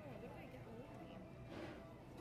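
Faint, indistinct background chatter of voices, with faint music underneath.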